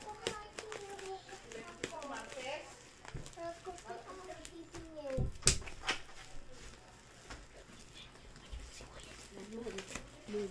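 A parcel being handled and opened: scattered small clicks and rustles, with one sharp knock about five and a half seconds in, the loudest sound. A soft murmured voice runs under the first half.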